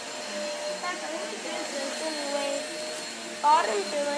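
A steady motor hum, like a household appliance running in the room, with faint voices under it and a child starting to speak near the end.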